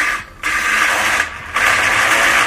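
Xenon CDGT800 cordless battery grass trimmer spinning its blade in free air in two short runs with a brief dip between, a humming whir. The blade is the only part of this brushless-free, fuel-free machine that makes much noise.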